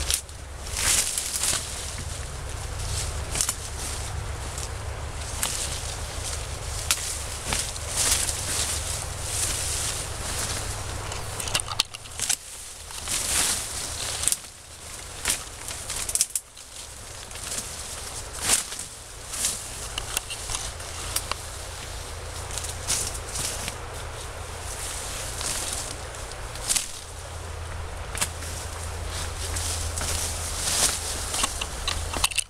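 Loppers cutting through rhododendron twigs and branches: irregular sharp snips and cracks, dozens of them, over continual rustling of leaves and twigs as branches are cut and pulled away.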